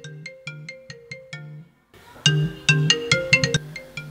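Mobile phone ringtone: a short melody of quick notes over a repeating bass line. The loop ends about two seconds in and starts again, louder, after a brief gap.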